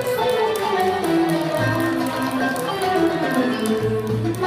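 Live Turkish classical music ensemble playing an instrumental passage: a moving melody over sustained bass notes, with light plucked notes running through it.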